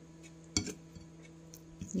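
A brief clink against a ceramic plate as raw mutton chops are handled on it, about half a second in, over a faint steady hum.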